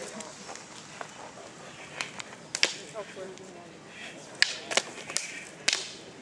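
Single rattan sticks clacking in stick-fighting sparring: sharp, irregular cracks, a quick pair about two and a half seconds in and a burst of three or four in the last two seconds.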